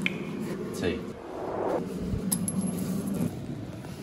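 Mugs and a teaspoon clinking and knocking on a kitchen worktop while tea is made. A click comes right at the start and a sharp clink a little past the middle.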